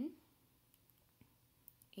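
Near silence: room tone with a few faint, brief clicks.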